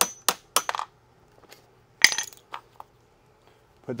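Quick steel-on-steel hammer taps on a punch driving the pivot pin out of a mobility scooter's tiller knuckle, about four a second, stopping under a second in. About two seconds in comes a single ringing metal clink, followed by a couple of light knocks.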